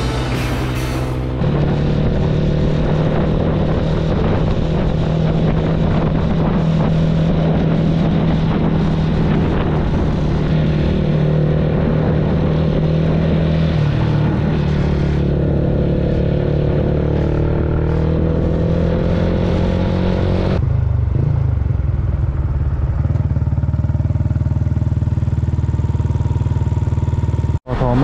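Motorcycle engine running steadily at cruising speed, with wind and road noise on the rider's helmet camera. About three-quarters of the way through, the wind noise falls away and the engine note drops as the bike slows.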